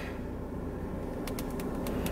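Low steady rumble of a car cabin with the engine idling, and a few light taps on a phone screen a little over a second in.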